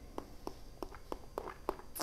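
Mouth sounds of a taster working a sip of red wine around his mouth: a run of soft wet clicks and smacks, about three a second, then a short breath of air near the end.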